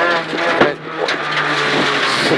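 Peugeot 208 R2 rally car's 1.6-litre four-cylinder engine heard from inside the stripped cabin, running at steady revs. A little past half a second in there is a sharp clack and a brief dip in the engine note.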